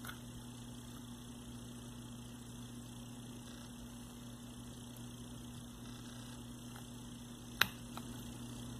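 Low steady mains hum with faint handling sounds as the end cap of a brushless RC motor is turned by hand to line it up, and one sharp click near the end.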